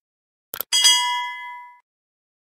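Subscribe-button sound effect: two quick mouse clicks, then a bright bell ding that rings out and fades over about a second.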